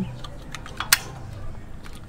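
A single sharp metal click about a second in as the Toyota Innova's brake caliper is worked into place over the new pads on the rotor, with a few faint handling ticks around it.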